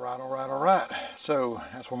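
A man speaking close to the microphone, with a steady high chirring of crickets behind his voice.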